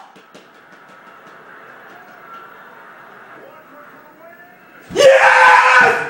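Faint, low sound of the basketball broadcast from a TV set, then about five seconds in a man screams "Yes!" at full voice, a jubilant yell at a last-second game-winning shot.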